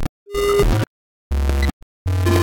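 Computer-generated synthesizer notes, each triggered when a bouncing sphere or block hits a wall of its box: two clusters of layered tones, about half a second each, that start and cut off abruptly with silence between.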